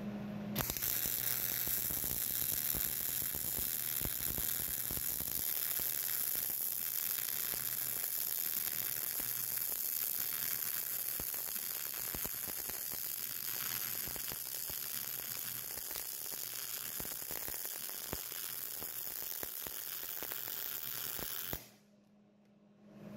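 MIG (GMAW) welding arc running 0.035-inch ER70S-6 wire on steel: a steady, dense crackling sizzle during one continuous bead. It starts about half a second in and cuts off suddenly just before the end as the trigger is released.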